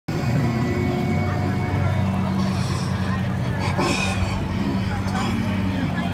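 Indistinct voices over a steady low, engine-like hum.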